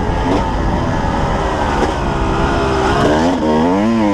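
Yamaha YZ250 two-stroke single-cylinder dirt bike engine pulling the bike along a trail, its revs rising and falling with the throttle. A clear climb in revs late on drops away again near the end.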